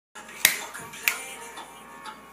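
Two sharp finger snaps, about two-thirds of a second apart, over faint music.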